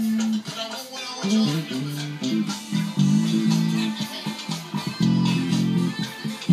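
Electric bass guitar playing a gospel quartet bass line, phrases of low notes broken by brief gaps, over other music.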